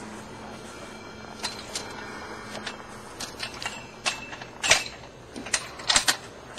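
Footsteps outdoors: a series of irregular sharp snaps and clicks, the loudest nearly five seconds in, over a faint low hum that fades out about three seconds in.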